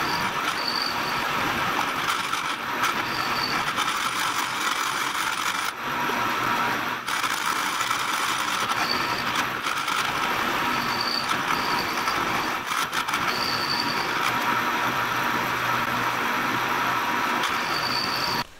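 Index vertical milling machine running, its end mill cutting aluminum plate: a steady mechanical whine with cutting noise, briefly dipping about six and seven seconds in.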